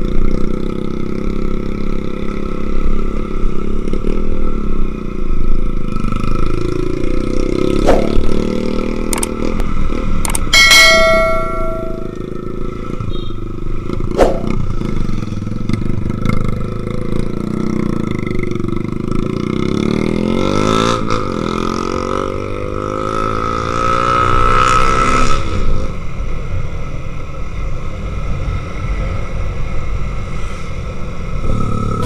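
Motorcycle engine running while riding, with the pitch rising and falling as the throttle changes, most clearly near the end. A few sharp knocks come about eight to fourteen seconds in, and a brief high, horn-like tone sounds about eleven seconds in.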